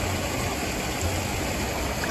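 Steady rushing splash of a pool fountain, with a low rumble that swells and fades underneath.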